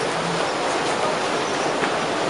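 Vaporetto waterbus engine running with its propeller churning the canal water, a steady mix of rumble and rushing wash.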